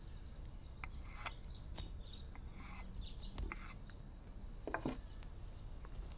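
A few soft scrapes and light taps of a spatula scooping icing out of a bowl and spreading it over a cake.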